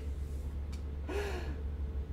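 A short breathy gasp from a person about a second in, over a steady low hum, with a small click just before it.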